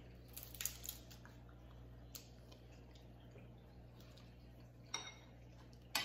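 A metal spoon lightly clinking and scraping in a bowl during a meal, a handful of faint separate clicks over a low steady room hum.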